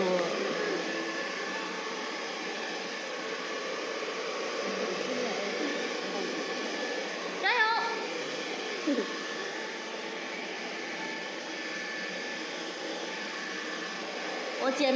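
Handheld hair dryer running steadily, a constant blowing hum. A short rising voice-like sound cuts in about seven and a half seconds in.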